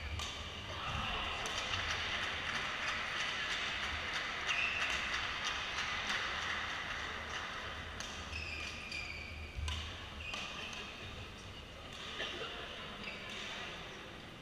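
Badminton play in a sports hall: rackets striking the shuttlecock as scattered sharp knocks, and shoes squeaking in short high chirps on the court floor.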